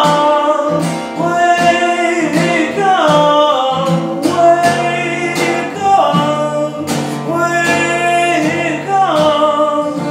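A man singing with his own acoustic guitar, strummed in a steady rhythm; several of his sung phrases slide down in pitch.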